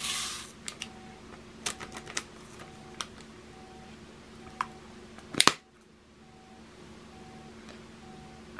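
Small plastic container of diamond-painting drills being handled. A short rustle comes at the start, then scattered light plastic clicks, and one louder knock about five and a half seconds in.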